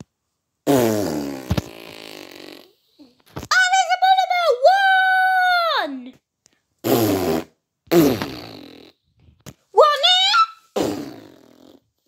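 Four fart sounds, each low and buzzy and trailing off, broken up by two high, wavering vocal squeals from a child's voice.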